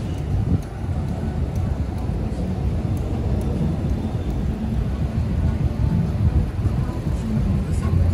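City street traffic: cars and vans driving through an intersection, a steady low rumble of engines and tyres.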